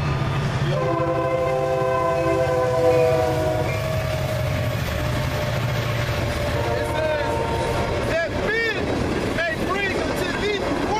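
A train passing close by sounds its horn: a chord of several notes held for about four seconds, sagging slightly in pitch, then a shorter, fainter blast a few seconds later. Under it runs the steady low rumble of the train.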